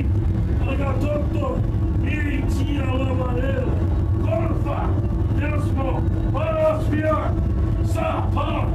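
Indistinct, muffled voices that no words can be made out of, over a loud steady low rumble and hum.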